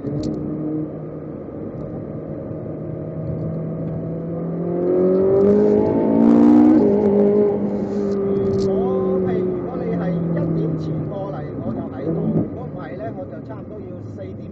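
Car engine running steadily, then rising in pitch as it accelerates for about two seconds midway, its loudest moment. It then drops back to a lower, steady pitch.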